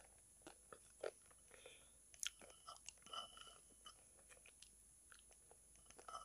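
Faint, close-miked mouth sounds of eating a soft brown paste of cream and calabash clay (ulo) from the fingers: scattered short clicks and smacks of chewing and lips.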